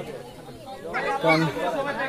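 Speech only: a man talking, resuming after a short pause at the start.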